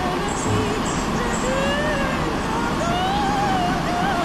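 Steady city road traffic noise on a busy avenue, with wavering pitched sounds gliding up and down over it.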